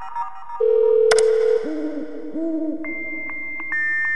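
Dial-up modem connecting: a steady low tone, a click about a second in, looping warbling tones, then a high steady whistle broken by regular clicks, with further high tones joining near the end.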